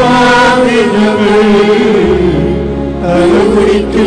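Liturgical chant from a Syriac Orthodox Mass, a sung melody gliding between notes over sustained low accompanying tones. The low notes shift to a new pitch about two seconds in.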